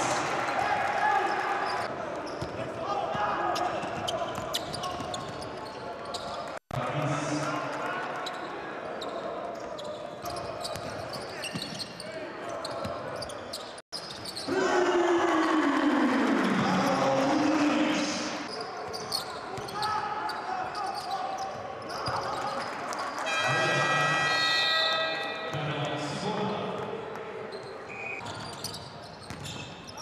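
In-arena basketball game sound: a basketball bouncing on the court amid crowd noise in a large, echoing hall. The crowd grows loudest for a few seconds in the middle. Later a pitched horn-like tone sounds for about two seconds, and the sound cuts out very briefly twice.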